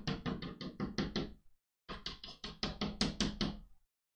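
Chalk tapping against a blackboard in quick, short hatching strokes, about six a second, in two runs with a brief pause about a second and a half in.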